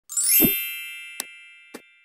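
Logo intro sound effect: a bright, shimmering chime that sweeps up, rings and slowly fades, with two short clicks a little past a second in and again near the end.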